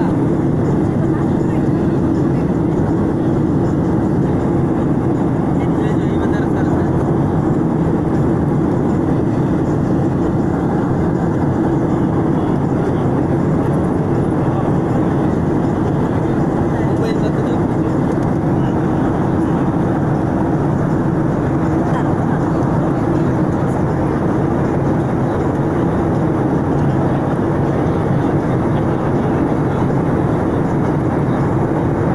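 Airliner cabin noise in flight: a steady, unchanging rush of engine and airflow noise with a low hum.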